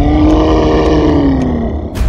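Loud big-animal roar sound effect: one roar whose pitch climbs quickly and then sinks slowly over nearly two seconds, over a deep rumble. A sharp hit comes at the very end.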